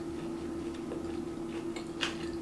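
Quiet chewing of a mouthful of food, with a couple of faint light clicks, over a steady low hum in a small tiled room.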